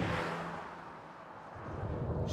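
A car driving on the road, heard as a faint haze of tyre and engine noise that fades down and then builds again.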